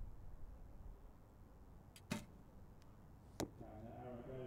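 Recurve bow shot: a faint click, then the string's sharp snap as the arrow is released about two seconds in, and just over a second later a short, sharp crack as the arrow strikes the target.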